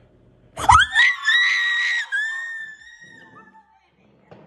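High-pitched screaming of joy, starting suddenly about half a second in, held for about a second and a half, then carrying on a little lower and fading out near the end.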